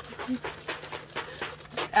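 Water from a toy water gun spattering onto a fabric umbrella-shelter canopy, in a quick, uneven series of hissing spurts.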